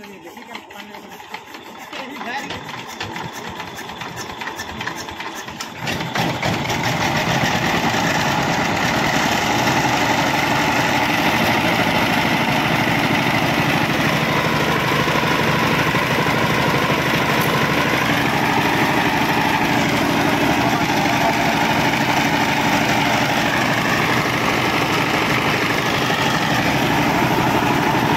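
Sifang power tiller's single-cylinder diesel engine being hand-cranked and picking up pace, catching about six seconds in, then running steadily with a rapid, even chug. It starts after its valve tappets have been adjusted to cure a starting problem.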